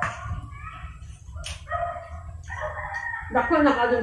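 A rooster crowing once: a loud call of a bit over a second with a wavering pitch, starting near the end.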